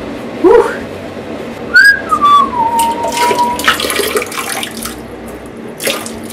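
A person whistling one note that slides down and then holds, over water splashing into a toilet bowl.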